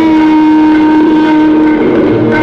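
Clarinet holding one long, steady note in a Hindustani classical raga, wavering briefly near the end before moving on.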